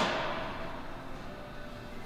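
Quiet gym room tone with faint background music; the echo of a man's voice dies away at the start.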